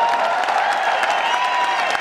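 Audience applauding steadily, with a few held tones underneath.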